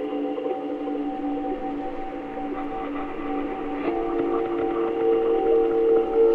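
Ambient music of sustained drone tones. The chord shifts about four seconds in and swells louder toward the end.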